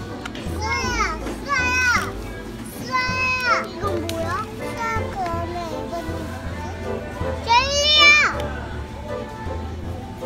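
Young children's high-pitched wordless calls, three short ones, the loudest near the end, with music playing in the background.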